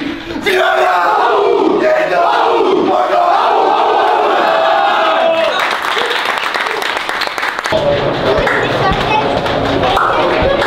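A team of men shouting together in a huddle, a loud battle cry of many overlapping voices. About eight seconds in it gives way to chatter over a low rumble.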